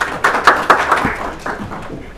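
Audience applauding, the clapping dense at first and thinning out near the end.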